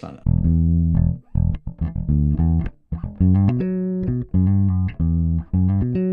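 Electric bass guitar played fingerstyle: a short line of separate plucked notes, some held and some clipped, climbing higher about halfway through. It is an improvised bass line over a minor chord, built on a major-seventh pattern that starts from the chord's flat third.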